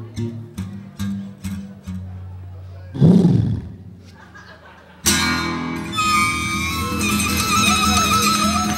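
Acoustic blues guitar playing a rhythmic closing phrase, settling onto a held chord and then a loud final hit about three seconds in that rings away. About five seconds in, a louder, dense sound with sustained high tones cuts in sharply.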